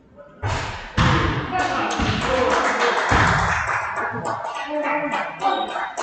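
A basketball thudding on a hardwood gym floor, about four heavy bounces in the first three seconds, under loud overlapping voices of players and spectators in the gym.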